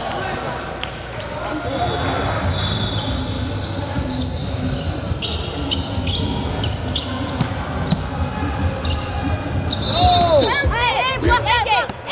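A basketball dribbling and bouncing on a hardwood gym floor, with sneakers squeaking and voices echoing in the hall. Near the end come a quick run of rising-and-falling squeaks.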